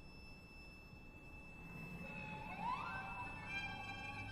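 Quiet contemporary music for strings and tape: a thin, steady high tone, joined about halfway through by a rising glide that settles into several held high notes.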